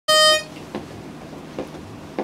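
A pitch pipe blowing one short, steady reedy note at the very start, giving the a cappella group its starting pitch. Two faint clicks follow, under a second apart.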